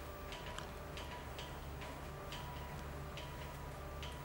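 Faint cath-lab room tone: a low steady hum with scattered, irregular soft ticks and a faint on-and-off beep.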